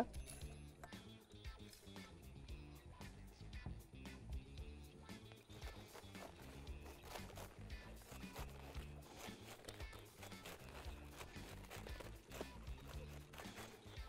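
Faint background music, with soft repeated crunches and clicks of a knife cutting the core out of a head of cabbage on a cutting board.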